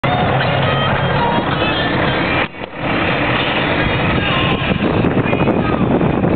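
Steady running and wind noise from an open, canopied vehicle in motion, with a brief drop in level about two and a half seconds in.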